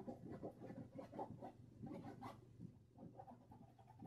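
A paintbrush scrubbing and dabbing acrylic paint onto a textured canvas: faint, short, irregular bristle strokes, several a second.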